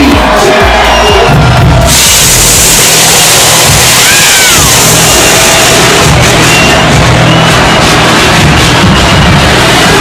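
Loud nightclub dance music with a steady bass beat, over a packed crowd cheering; the crowd noise swells about two seconds in.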